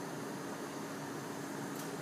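Steady room noise: an even hiss with a faint, steady low hum and no distinct clicks.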